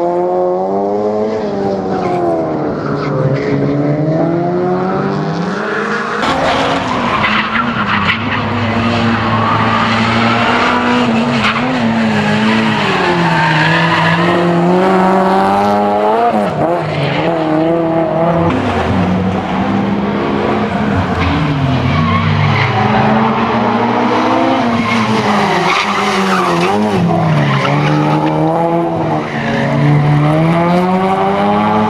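Race-prepared Honda Civic hatchback's engine revving hard, its pitch climbing and dropping again and again with gear changes and lifts for the corners, with tyres squealing through the turns.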